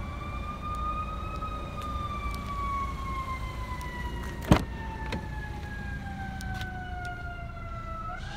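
A siren wailing: one slow rise in pitch, then a long, slow fall. About halfway through there is a single sharp click, the rear door latch of the car opening.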